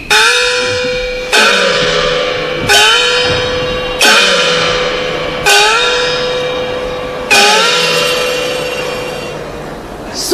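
A Chinese opera small gong (xiaoluo) struck six times at a slowing pace. Each stroke rings out with a brief upward bend in pitch.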